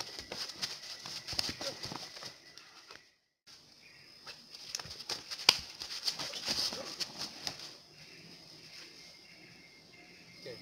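Sharp slaps and knocks of hands and forearms striking arms and bodies, with bare feet scuffing on a dirt path, as two silat fighters trade blows. Short grunts come from the fighters, over a steady high insect buzz. The sound breaks off briefly about three seconds in.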